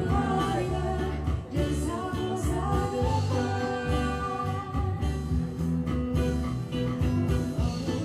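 Live acoustic band: a woman singing a slow pop song into a microphone, backed by acoustic guitars and an electric bass.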